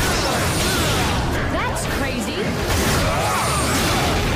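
Television fight-scene soundtrack: music under a run of whooshing strikes and impact effects, with shouts or grunts between them.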